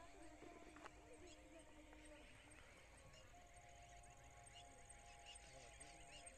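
Near silence: faint outdoor ambience, with a thin steady high-pitched drone ticking at an even pace and a scatter of faint chirps.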